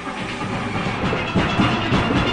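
A single pan steel orchestra playing live: many steelpans struck in quick, dense runs, with a drum kit and percussion keeping the beat.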